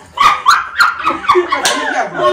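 Small puppy yapping: a quick run of short, sharp barks, about three a second.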